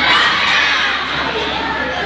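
A large group of schoolchildren shouting and cheering together, loudest in the first half second and then easing a little.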